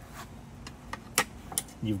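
Bungee cord hooks being worked loose from a folding hand truck's frame: a few light clicks and rattles, the sharpest about a second in.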